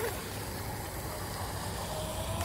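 A 12-inch RC micro hydroplane's Hobbywing 2030 7200 kV brushless motor running at speed, heard as a faint thin whine over a steady background hiss.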